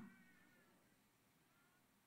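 Near silence: room tone, with a few very faint, thin high tones that waver slightly, in the first second and once more near the end.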